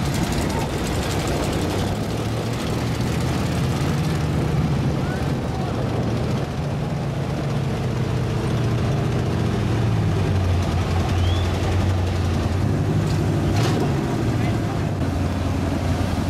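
Engines of lifted mud-bogging trucks running hard under load as they pull a stuck truck out of the mud: a loud, continuous low engine drone that swells about ten seconds in. Voices of onlookers are heard over it.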